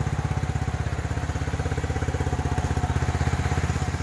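Yamaha motorcycle's single-cylinder four-stroke engine idling steadily, its worn, loose piston skirt freshly pressed to stop piston slap; the owner judges the knocking reduced by about 70%.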